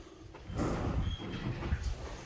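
Aluminium-framed glass entrance door pushed open by its crossbar: starting about half a second in, a noisy clatter lasting over a second, with a short high squeak in the middle and a sharp click near the end.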